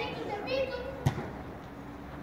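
Children's voices calling out during a football game, with one sharp thump of a ball being kicked about a second in.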